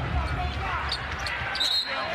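Live basketball game sound: steady arena crowd noise with a ball bouncing on the hardwood court and a short high squeak near the end.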